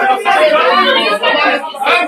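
Several people talking loudly over one another in a heated argument.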